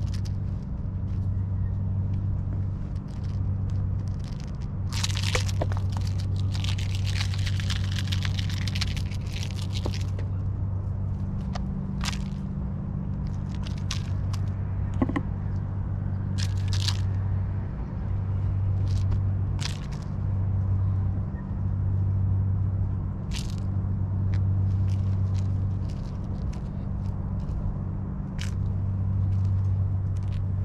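Kittens scrabbling and pouncing after a feather wand toy on concrete, rope and netting: scattered light scrapes, taps and rustles, with a longer rustling stretch about five to ten seconds in. A steady low hum runs underneath.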